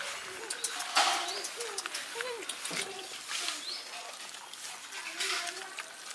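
Dogs eating rice from a metal tray: a run of wet smacking and lapping clicks, loudest about a second in. A faint voice is heard in the background.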